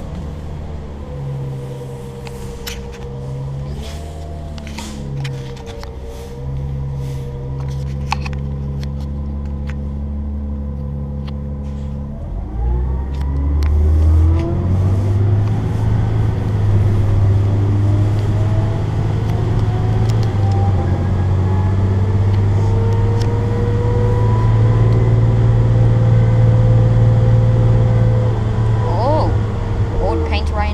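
New Flyer C40LF transit bus's natural-gas engine heard from inside the cabin. It runs low and steady for about twelve seconds, then revs up as the bus accelerates, growing louder, and its pitch climbs slowly for the rest of the stretch.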